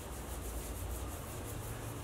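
Fingers massaging coconut oil into the scalp and hair: a soft, quick, rhythmic rubbing and scratching of oiled hair.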